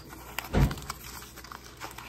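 Light clicks and rustles of a small package being handled on a tabletop, with one low thump about half a second in.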